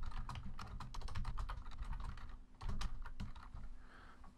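Typing on a computer keyboard: a quick run of key clicks with a brief pause a little past the middle.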